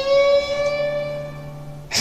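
Electric guitar holding one long note that bends slightly upward and fades away, ending a guitar passage in a rock ballad.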